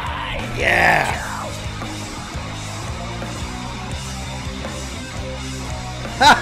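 Live rock band music with electric guitar, bass and drums playing. A loud, wavering vocal yell rises and falls about half a second in, then the band holds a sustained chord.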